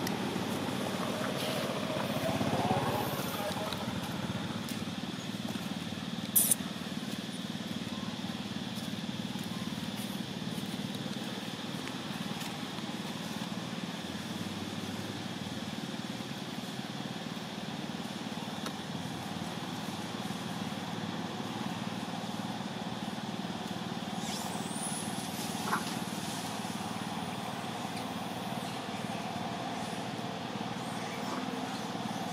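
Steady outdoor background noise with a low hum, broken by a sharp click about six seconds in and a brief rising high squeal near the end.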